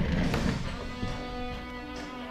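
Background music: a guitar chord struck near the start and left ringing, with a brief burst of noise as it begins.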